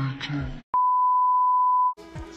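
A young man's voice holds a drawn-out 'oh', then the sound cuts to silence. After a click, a loud steady beep at one pitch lasts just over a second: an edited-in censor bleep covering a word.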